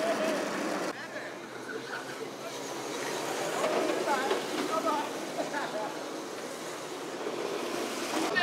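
Small electric drift kart driving and sliding on asphalt, with voices in the background. The sound drops abruptly about a second in.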